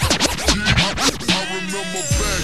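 Slowed-down, chopped-and-screwed hip hop beat, with a run of rapid turntable scratches over its first second or so before the slowed beat carries on.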